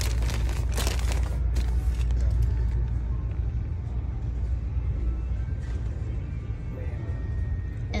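Plastic packaging rustling for about the first second and a half as a wrapped pack of boxers is handled. Then a steady low hum of a large store, with faint background music.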